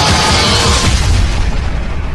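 Loud electronic intro music with a deep, booming low end, beginning to fade out near the end.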